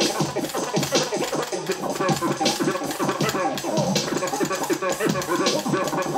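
Turntable scratching: a vinyl record pushed back and forth by hand, giving rapid rising and falling pitch sweeps, over a sharp hit that comes about every second and a half.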